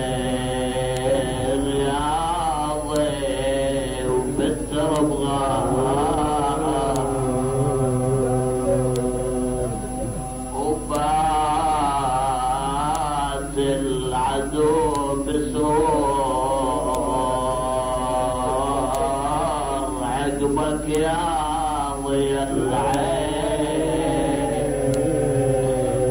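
A man chanting a melodic Arabic mourning lament in long held lines that waver and bend in pitch, the style of a Shia majlis recitation. A steady low hum and a faint high whine from the old recording run underneath.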